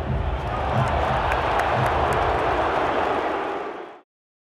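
A large stadium crowd's noise, swelling about half a second in and fading out near the end.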